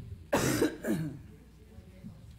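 A person coughing twice in quick succession, the first cough the louder, over a low murmur of voices and shuffling in a large room.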